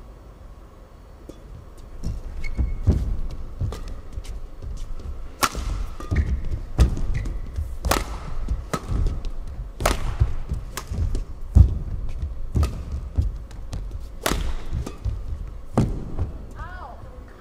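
A badminton rally: sharp racket strikes on the shuttlecock, one every second or two from about five seconds in, over heavy footfalls thudding on the court as the players move and lunge.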